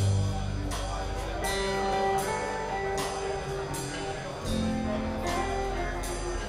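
Live acoustic-rock band playing an instrumental passage: acoustic guitars over an upright bass, with drums keeping a steady beat of accents about every three-quarters of a second.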